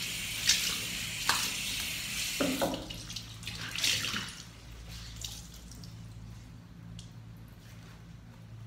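Bathroom sink tap running as a small towel is wetted under it, with a few splashes; the tap stops about three seconds in, leaving a few quieter wet handling sounds.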